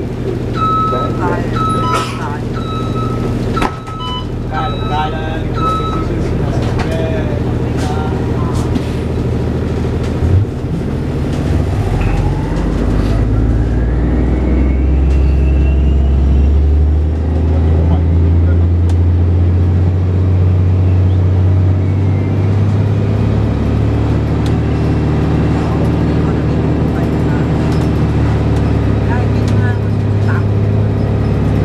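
Inside a 2007 Orion VII diesel-electric hybrid bus (Cummins ISB diesel with BAE Systems HybriDrive) under way. A short run of electronic beeps sounds in the first few seconds. Then, as the bus pulls away, a whine rises in pitch and the engine's low drone swells and stays loud.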